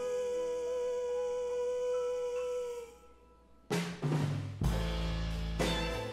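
A female singer holds one long, steady high note with the instruments stopped, ending about three seconds in. After a short pause the full band comes back in loudly, with drum kit hits and deep bass under strings and piano.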